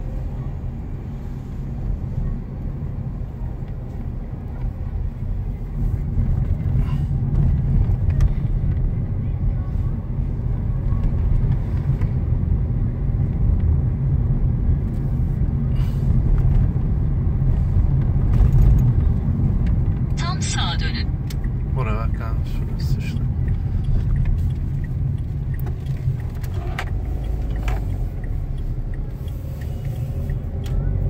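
Car cabin noise while driving at town speed: a steady low rumble of engine and tyres heard from inside the car.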